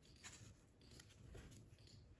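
Faint paper handling near silence: a glue stick rubbed over paper cut-outs, with a few light ticks as petals are picked up and pressed down.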